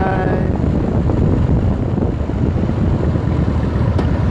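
Steady wind rush and buffeting on the microphone of a phone held up on a moving motorcycle, mixed with engine and road noise.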